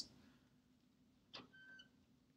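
Near silence: room tone, with a faint click and a short faint tone near the end.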